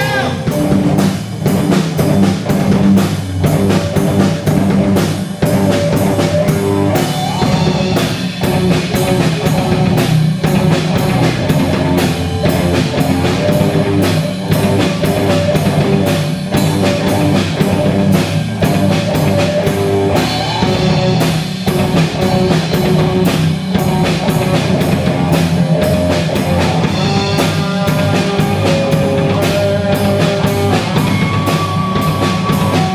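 Live instrumental rock from a band of electric guitars, drum kit and keyboard, played loud over a steady drum beat.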